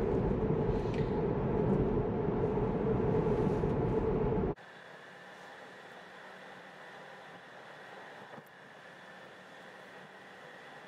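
Road and tyre noise inside a Tesla's cabin as the electric car drives along, a steady hum with no engine note. About four and a half seconds in it drops suddenly to a much quieter, even hiss.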